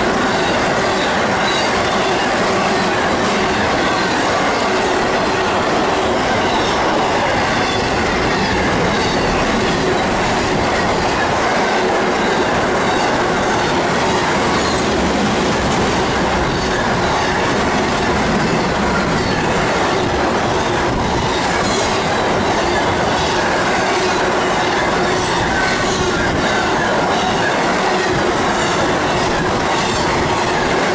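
Double-stack container cars of a BNSF intermodal freight train passing at speed close by: a steady, loud wheel-on-rail noise with faint scattered clicks from the wheels and trucks.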